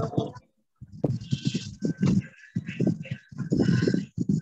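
A man's voice reciting a poem in a dramatic, strained delivery, in broken phrases with a short gap about half a second in, heard through a choppy online-call connection.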